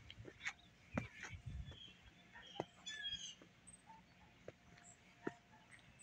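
Quiet outdoor background with a few short, faint bird chirps and a handful of separate soft knocks of footsteps on grass.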